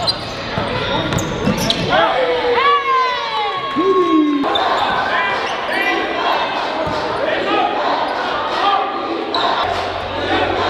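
Live basketball game sound in a gym: sneakers squeaking on the hardwood and the ball bouncing, over voices of players and spectators echoing in a large hall. A burst of squeaks comes about two to four seconds in, and the sound changes abruptly just after, where the footage cuts to another game.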